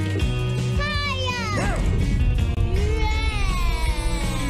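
Cartoon background music under a character's drawn-out vocal cry, a few long glides falling in pitch.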